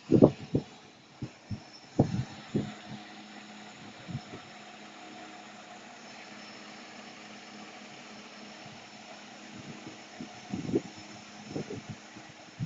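Steady low hum of idling fire-truck engines, with short low thumps on the microphone in the first few seconds and again near the end.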